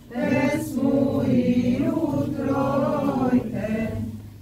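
Orthodox liturgical chant sung by several voices together, one phrase starting just after the beginning and fading out near the end.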